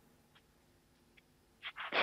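Near silence on a satellite video-call audio link, with two faint ticks, then a few short breathy sounds near the end as a man's voice comes back in.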